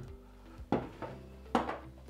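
Two short knocks of the hard plastic auger and juicing screen of a Sana 828 vertical slow juicer being lifted out of the juicing chamber and set down on a table, over soft background music.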